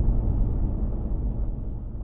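Low, steady road and engine rumble inside a moving car's cabin, fading out near the end.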